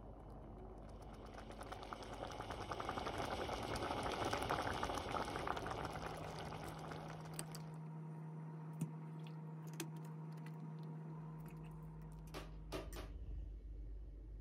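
Minced-meat and tomato sauce sizzling and bubbling in a hot pan, a dense crackle that grows louder and then cuts off suddenly about seven and a half seconds in. A low steady hum follows, with a few light clicks of a metal spoon on a glass baking dish, several of them close together near the end.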